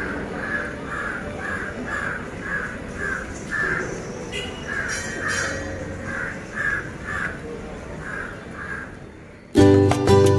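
A crow cawing over and over, about two calls a second with a couple of short breaks, over outdoor background noise. Loud music starts suddenly just before the end.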